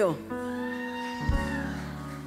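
Soft background music of held chords under a pause in the preaching, with a low bass note coming in a little after one second.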